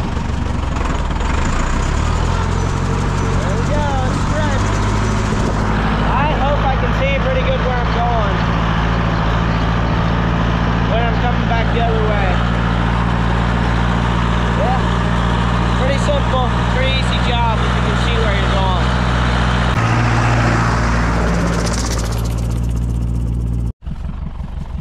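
Deutz D 6006 tractor's air-cooled four-cylinder diesel running steadily under way, with the PTO engaged driving a Vicon seed spreader. The engine note shifts about twenty seconds in, and the sound cuts off abruptly near the end.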